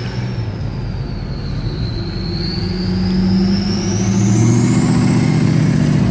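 Turbocharger whistle from a straight-piped Duramax 6.6-litre V8 turbodiesel pickup, a high thin tone over the low diesel exhaust. The whistle dips slightly about two seconds in, then climbs in pitch while the truck gets louder, as it accelerates.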